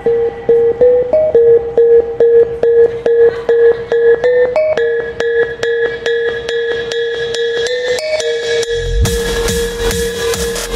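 Electronic dance music: a repeated short synth note over clicking percussion builds up, then deep bass and a full beat drop in about nine seconds in.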